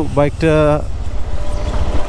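GPX Demon GR165R's single-cylinder engine running at low road speed while being ridden, a steady low rumble heard alone in the second half.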